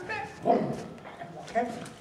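A man's voice calling two short chanted syllables, about half a second and a second and a half in, voicing the rhythm of a drum break for the drummers to copy.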